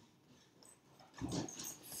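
Near silence, then about a second in, a brief soft vocal sound from a man, a breath or a half-voiced murmur.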